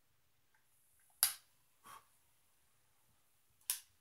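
A sharp puff of breath blowing out a candle flame about a second in, then a short sharp click near the end as a utility lighter is sparked in the rising smoke, the flame jumping down to relight the wick.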